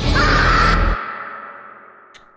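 A boy's scream as a meme sound effect, starting suddenly and then fading out slowly. Dramatic music underneath cuts off about a second in.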